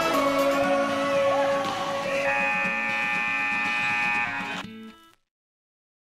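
Scoreboard buzzer sounding as the game clock runs out: one steady, many-toned blast starting about two seconds in and lasting over two seconds, after which the sound cuts off to silence.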